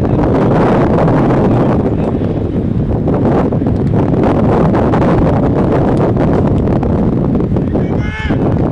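Wind buffeting the microphone: a steady, loud rushing rumble.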